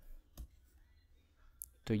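Two quick computer keyboard key clicks in the first half second, with a faint tick about a second later.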